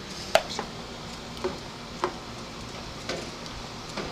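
Glass canning jars set into a water-bath canner with a metal jar lifter: a sharp clink about a third of a second in, then a few fainter knocks of glass against glass and the pot.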